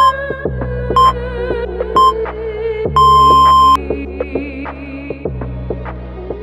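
Workout interval-timer countdown: three short beeps a second apart, then one longer beep, over background music.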